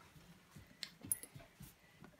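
Faint, scattered light clicks and taps as a dog moves on a hardwood floor and mouths a hand-held plastic cup.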